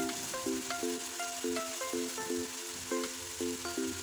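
Diced chicken and vegetables sizzling in oil in a non-stick wok while a spatula stirs them, a steady hiss. Background music of short, quick notes plays over it.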